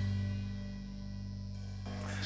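The final chord of a live band's song ringing out: electric guitar and bass guitar holding the last notes and slowly fading, with no new notes struck.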